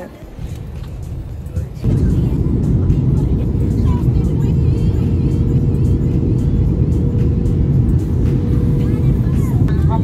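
Jet airliner cabin noise heard from a window seat: a loud, steady low roar of engines and airflow that comes in abruptly about two seconds in, with a faint steady hum running through it.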